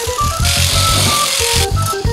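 Background music, with an electric sheet-metal shear cutting 18-gauge steel: a high hiss of cutting noise that starts about half a second in and stops abruptly after about a second.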